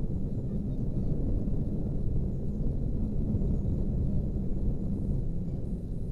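Wind buffeting an action camera's microphone at the top of a tall chimney: a steady, unevenly gusting low rumble.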